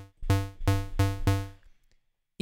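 Low square-wave synth patch in Serum, with a short amp envelope, playing the same note repeatedly, about four short notes a second, each with a click at its start. The run stops about a second and a half in. The filter is not yet switched on.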